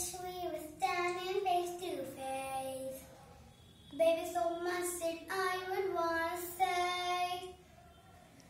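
A young girl singing in phrases of held, gliding notes, with a short break about three seconds in and another near the end.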